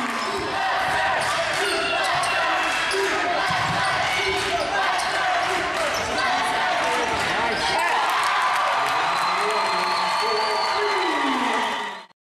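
Basketball game in a gym: a ball bouncing on the hardwood court and sneakers squeaking, under a constant din of crowd voices and shouting.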